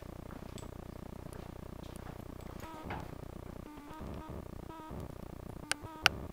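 Steady low background hum with a few faint, indistinct sounds in the middle and a sharp click near the end.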